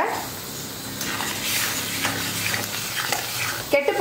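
Tomato thokku sizzling in a stainless-steel pressure cooker as a spatula stirs it: a steady frying hiss.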